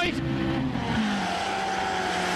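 Rally car engine running at a steady, high note with road and tyre noise. About a second in, it drops to a lower steady note.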